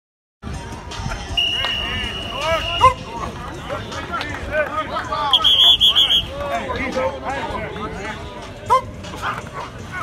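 Football players and coaches shouting and calling out over one another during a one-on-one line drill, with a steady high tone lasting about a second about five seconds in.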